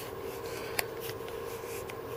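Laptop power adapter cord being wound by hand around its plastic adapter brick: soft, steady rubbing of the cord over the plastic, with two faint clicks.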